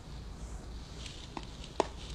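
Two short, sharp knocks of a hard object on a surface, a small one about a second and a half in and a much louder one just before the end, over a low steady hum.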